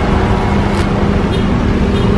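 Car engine idling close by, a steady low hum, with wind rumbling on the microphone.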